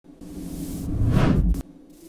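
Whoosh sound effect that swells over about a second and a half, then cuts off suddenly.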